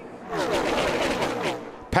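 A pack of NASCAR stock cars passing at full throttle: a dense rattle of many V8 engines, their pitches falling as they go by.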